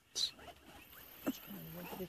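Leopard feeding on an impala carcass, chewing and tearing at meat and bone, with two short sharp crunches: one just after the start and one a little past halfway.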